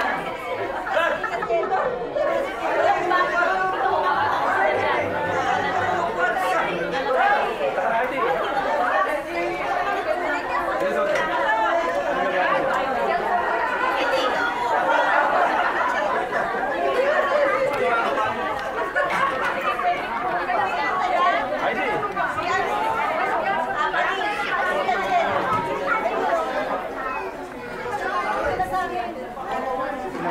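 Many people talking at once in a large meeting room: steady crowd chatter with no single voice standing out.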